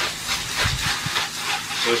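Water spraying from a hose spray nozzle, a steady hiss with a few faint knocks.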